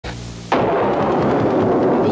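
A low hum, then about half a second in a sudden loud rumble of thunder that holds steady, used as a storm sound effect.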